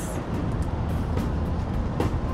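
Steady city-street traffic noise from passing cars and trucks, with background music.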